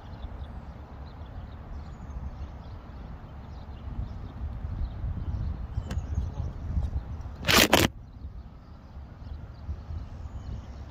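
Wind buffeting an outdoor phone microphone, an uneven low rumble that grows stronger in the middle, broken by a single loud burst of crackling noise lasting under half a second about three-quarters of the way through.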